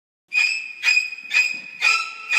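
Four high-pitched ringing tones, about two a second, each starting suddenly and fading away, after a brief moment of silence.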